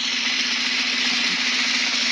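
Drum roll sound effect: a steady, unbroken roll that builds suspense before a prize winner is drawn.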